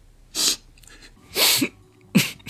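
A man's stifled laughter: two sharp bursts of breath through a closed mouth, about a second apart, the second ending in a short low voiced sound.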